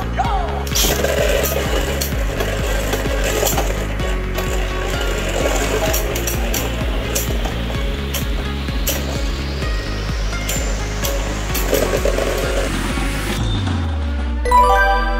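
Background music with a steady beat over two Beyblade Burst spinning tops battling in a plastic stadium. Repeated sharp clacks come as the tops strike each other and the stadium wall. Near the end one top bursts apart.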